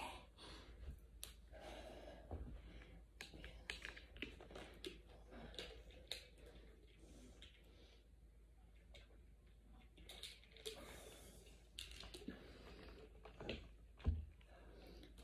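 Near silence: faint room tone with scattered light clicks and rustles.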